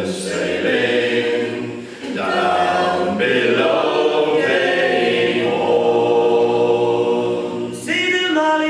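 Mixed group of men's and women's voices singing a sea song a cappella in harmony, in long held phrases with a short break for breath about two seconds in.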